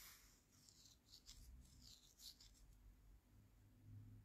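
Near silence: room tone with a few faint, short scratchy rustles.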